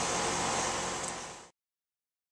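Rheem RAPM 4-ton condensing unit running, its scroll compressor and single-speed ECM condenser fan giving a steady rush with a low hum. It fades out and cuts to silence about one and a half seconds in.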